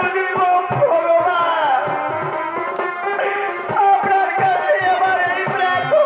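Indian folk music accompanying a chhau dance: a wavering, bending melody over repeated drum strokes.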